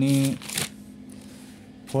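A brief rustle of notebook paper about half a second in, as the page is turned, followed by quiet room tone with a faint steady hum.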